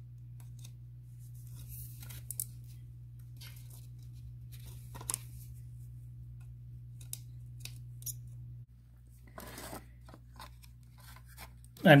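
Small clicks, taps and scrapes of a soldering iron and needle-nose pliers working on an ECM blower motor's circuit board while the old thermistor is desoldered, over a steady low hum that cuts off suddenly about three-quarters of the way through.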